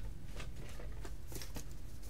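Faint handling sounds of plastic VHS tape cases being picked up and set down: a few light clicks and rustles scattered through, over a low steady background hum.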